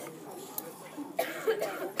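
A man coughing, a few short coughs in the second half after a quiet first second.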